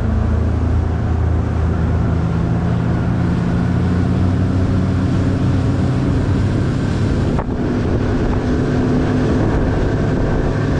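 Bass boat's outboard motor running steadily at speed, with hull and water noise and wind buffeting the microphone.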